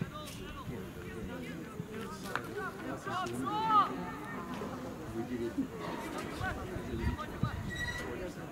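Distant shouting from players and spectators across a soccer field, with short calls rising and falling in pitch; the loudest call comes a little before the middle.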